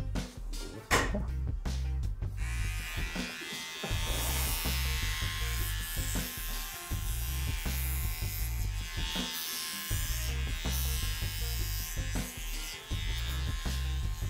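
Handheld electric shaver buzzing steadily as it shaves hair from the skin of a leg, starting about two seconds in.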